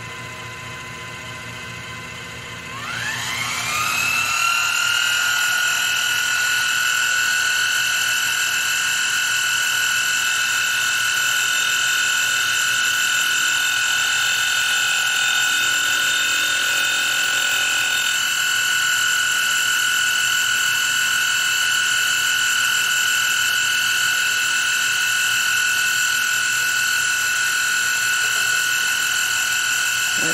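Milling machine spindle spinning up about three seconds in with a rising whine, then running at a steady high whine while a light skim cut is taken on an aluminium connecting rod.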